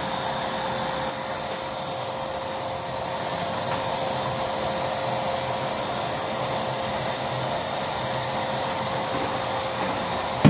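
Canister vacuum cleaner running steadily with a constant whine as its wand nozzle is pushed over carpet.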